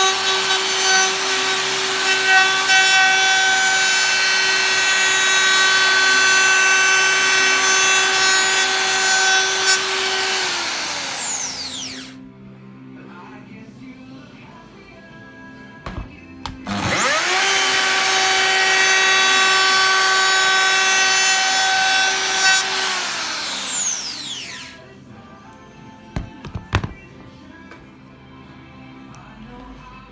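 DeWalt plunge router fitted with a round-over bit, running at full speed with a steady high whine, then winding down when switched off about ten seconds in. Near the middle it starts again with a rising whine, runs steadily, and winds down a second time, with a few short sharp knocks in the quiet gaps.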